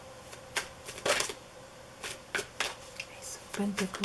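A tarot deck shuffled by hand, overhand: irregular quick slaps and riffles of card on card, with a longer flurry about a second in. A voice begins near the end.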